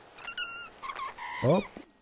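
Two domestic cats chirping and meowing at each other in a few short calls, heard from a video clip being played back at double speed.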